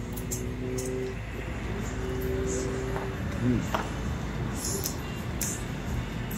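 A man humming a closed-mouth "mmm" twice, each held for about a second, while chewing a bite of a chili cheese coney. A low steady rumble and a few faint clicks run underneath.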